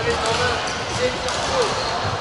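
Badminton hall ambience: scattered sharp hits of rackets on shuttlecocks and shoes on the court floor from the courts around, over a murmur of voices.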